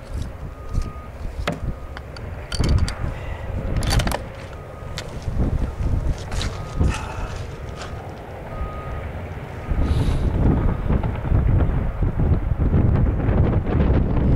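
Wind buffeting the microphone in low gusts that grow louder about ten seconds in, with scattered sharp clicks and knocks from handling.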